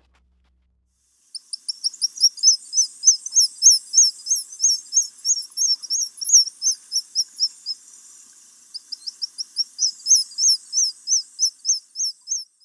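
A bird calling: a fast series of short, high chirps, about five a second, starting a little over a second in, with a pause of about a second two-thirds of the way through before the chirping resumes.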